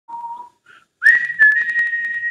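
A person whistling: a short lower note, then a long, higher held note that slides up into pitch about a second in. A quick run of sharp clicks sounds during the long note.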